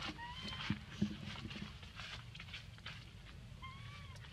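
Baby macaque giving short rising squeaks, one just after the start and one near the end, over a faint crackle of dry leaves. Two soft knocks about a second in are the loudest sounds.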